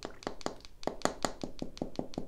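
A round paint brush tapped rapidly against the side of a plastic jar of powder, making a quick run of light taps, about six a second, that knock excess powder off the bristles.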